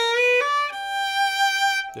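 Solo fiddle, bowed: the tail of a bluesy descending lick played high on the E string over G, a quick slur from the flat third up to the major third, a step up, then one long held note that stops just before the end.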